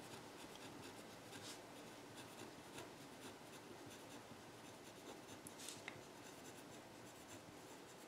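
Faint scratching of handwriting on paper, made up of short, quick strokes.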